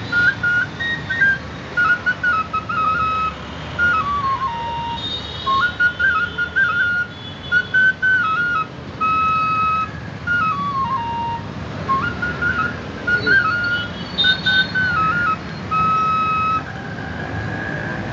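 A melody played on an end-blown flute, a single line of short notes stepping up and down with two falling runs. It stops shortly before the end, over a steady hum of street traffic.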